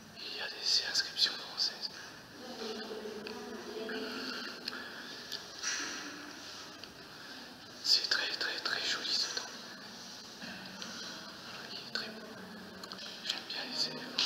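A person whispering in short breathy phrases, with louder stretches about a second in and around the middle.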